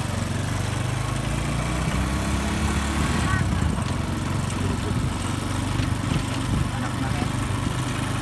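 Motorcycle engine of a passenger tricycle running steadily, an even low drone that holds its pitch.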